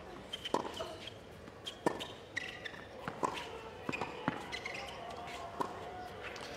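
Tennis ball struck back and forth with rackets in a rally on a hard court: about five sharp hits, roughly one every second and a bit.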